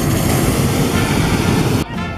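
Hot-air balloon propane burner firing: a loud, steady rush of flame that cuts off suddenly near the end.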